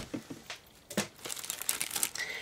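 Clear plastic sticker packages crinkling and rustling as they are handled and shuffled, with a sharper crackle about a second in.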